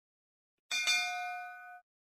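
Bell-like notification ding sound effect. It is struck twice in quick succession and rings for about a second before cutting off.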